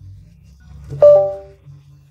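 Samsung Galaxy phone's startup chime as it boots, a short bright chime about a second in that rings out over about half a second. A low steady hum runs underneath.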